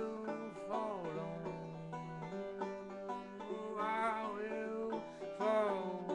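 Banjo played in an instrumental passage, over long held notes, with a few downward-sliding tones about a second in, near four seconds and near the end.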